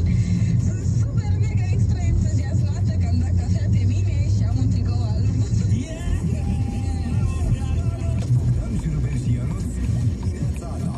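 A car radio playing music with a singing voice inside the cabin of a moving car, over the car's steady low engine and road hum.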